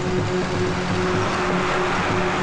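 Vehicles, a car and a bus, driving along a dirt road: steady engine and road noise, mixed with background film music.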